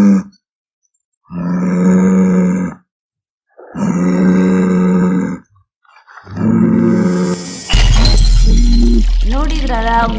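A bull mooing over loudspeakers, about four long calls of steady low pitch with silent gaps between them. Near the end, loud music with a deep bass drone comes in.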